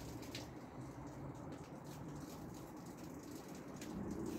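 Faint fizzing and patter of beer foam gushing out of a just-opened, over-pressurised can of stout and dripping down.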